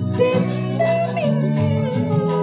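A woman singing a Sinhala song into a handheld microphone over an instrumental backing track, her voice gliding between held notes.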